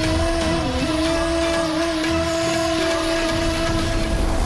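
Background music: a melody of long held notes over a low bed, following quicker note changes just before.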